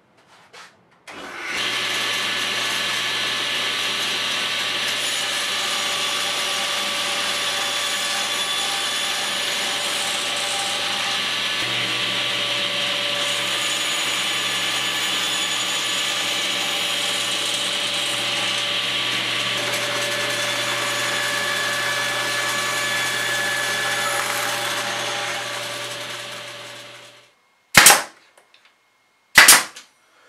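Table saw running steadily while thin scrap wood is ripped, then coasting down after it is switched off. Two short, sharp snaps follow near the end.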